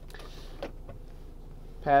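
Low, steady background hum in a car cabin with a single faint click about halfway in; a man starts speaking near the end.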